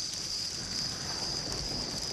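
Crickets chirring steadily in a constant high-pitched chorus, over a faint low rumble of background noise.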